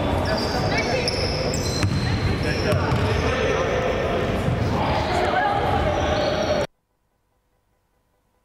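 Basketball bouncing on a wooden gym floor, with players' voices echoing in the sports hall. The sound cuts off abruptly about two-thirds of the way in, leaving near silence.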